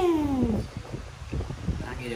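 A cat's single meow that rises briefly and then slides down in pitch, ending about half a second in.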